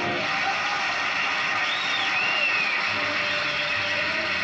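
Studio audience applauding as a song ends, with one person's whistle about two seconds in, over the band playing out.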